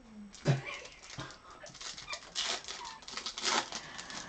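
A dog whining outside a closed door, over the crinkling and tearing of a foil trading-card pack wrapper.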